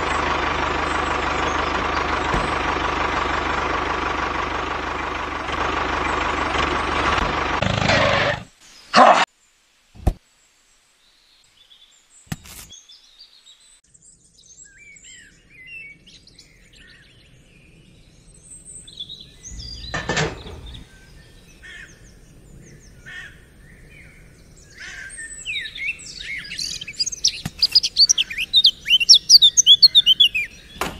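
Birds chirping, sparse at first and growing into a loud, busy chorus near the end. Before them a steady whirring hiss with a faint whine cuts off suddenly after about eight seconds, followed by a few sharp clicks.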